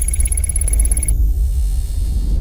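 Electronic logo-animation sting: a deep, steady bass rumble with a thin high tone over it that cuts off about a second in.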